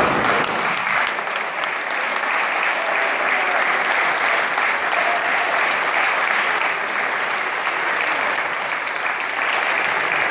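Many people applauding together, a dense, steady clapping.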